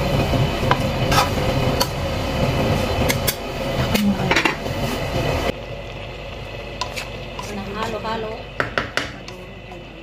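Wooden spatula stirring chopped spinach and potatoes in a cooking pan, with scraping and scattered knocks against the pan. The stirring grows quieter about halfway through.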